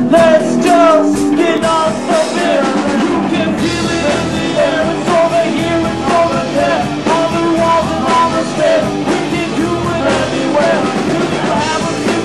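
A live rock band playing loud and steady, with electric guitars, bass guitar and drum kit.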